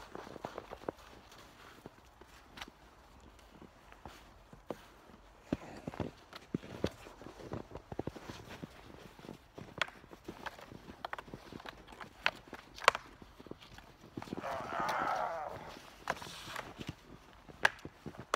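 Wooden sticks knocking together at irregular intervals in a mock sword fight, with footsteps in snow. A short burst of voice comes about three-quarters of the way through.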